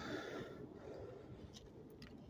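Quiet background noise with two faint clicks near the end.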